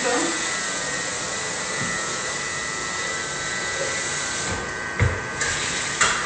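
A steady rushing noise with no clear rhythm, and a dull thump about five seconds in.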